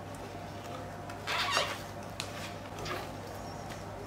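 Silicone spatula stirring and scraping thick cake batter in a glass bowl: a few soft, wet squelches about a second and a half in and a light tick a little later, over a steady low hum.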